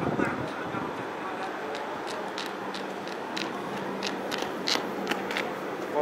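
Outdoor ambience with a steady low hum and faint voices. From about a second and a half in there is a scatter of short, sharp high clicks.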